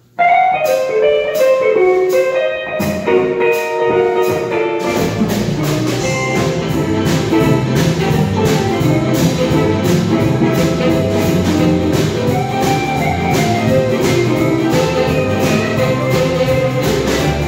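Live blues band starting a song. A lead electric guitar plays the intro over light cymbal ticks, then about five seconds in the bass and full drum kit come in and the band plays on together.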